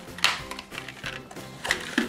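Plastic blister packs of paintbrush sets being handled, their plastic crackling in short bursts, loudest about a quarter second in and again near the end, over background music.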